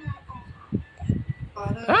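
A baby giving short, low grunts and effortful noises as it pushes itself up onto its arms, followed near the end by an adult's short exclamation.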